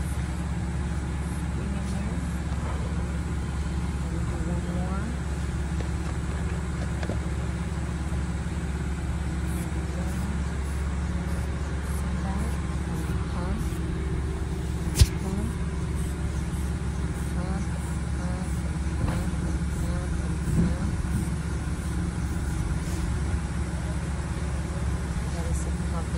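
Steady low drone of an idling truck engine, with faint voices in the background. One sharp click comes about halfway through.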